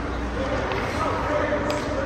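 Ice-rink ambience: distant, indistinct voices over a steady low hum, with one sharp knock, like a puck striking a stick or the boards, near the end.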